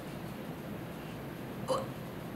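Quiet steady room tone, then near the end one brief, sharp intake of breath from a woman.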